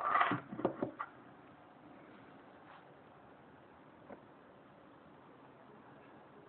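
Handling knocks and rattles from a QHY8 astronomy camera being set down on a desk, several sharp hits packed into the first second, then a faint steady hiss with one small click about four seconds in.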